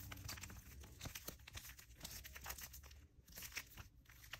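Faint crinkling and clicking of plastic card sleeves as a stack of sleeved trading cards is handled and flipped through, many small crackles in quick succession.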